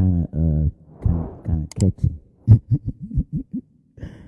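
A man's voice, speaking or half-singing in short phrases with no clear words, and a sharp click a little under two seconds in.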